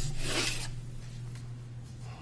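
Microphone handling noise: a short rubbing scrape right at the microphone in the first half second or so, fading out, over a steady low electrical hum from the sound system.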